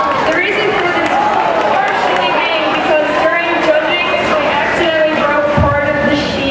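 Audience chatter in a large hall, many overlapping voices with no single clear talker. A low thump comes about five and a half seconds in.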